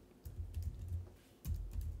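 Typing on a computer keyboard: a quick, irregular run of keystrokes with a brief pause a little past the middle.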